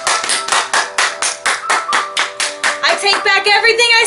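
Hands clapping fast and evenly, about five claps a second, over faint background music. Near the end the clapping stops and an excited voice takes over.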